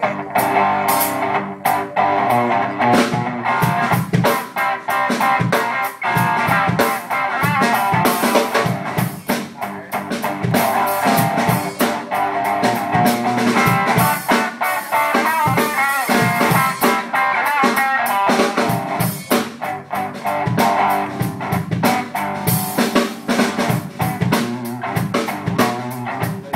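Live rock music from an acoustic guitar and a drum kit played together, the drums keeping a steady beat under the guitar.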